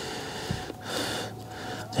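Quiet handling of a portable tire inflator as its air hose is screwed into the pump's outlet, with a small click about half a second in and a breath about a second in.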